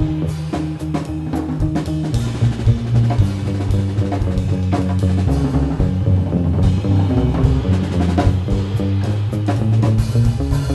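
Jazz quartet playing live, with the drum kit to the fore over a moving double-bass line and electric guitar.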